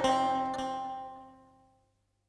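Final struck note of a Turkish folk song played on bağlama, the plucked strings ringing out and fading away to silence about a second and a half in.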